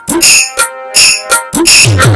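Loud, fast percussion from a jatra stage band: drum strokes that drop in pitch, with bright metallic cymbal or jingle hits over them, and a brief lull in the middle.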